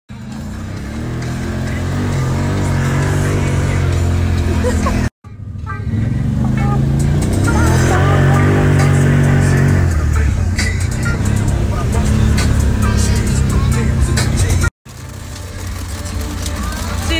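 Side-by-side UTV engine running and revving, rising and falling in pitch, heard from inside the cab. The sound cuts off abruptly twice, and scattered ticks come in during the later part.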